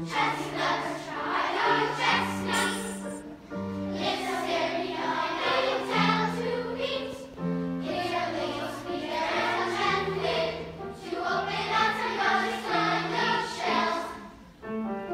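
A large choir of young voices singing in harmony, with piano accompaniment holding low notes beneath.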